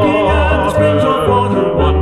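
Vocal quartet singing a gospel hymn in close harmony, holding a phrase with a strong vibrato, over accompaniment with low notes that change about every half second.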